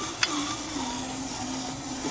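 Electric drive motor and gearbox of an RC 6x6 truck giving a faint steady whine as it creeps along towing a loaded lowboy trailer, with a single sharp click about a quarter second in.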